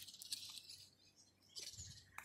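Faint bird chirps trailing off in the first part, then near silence.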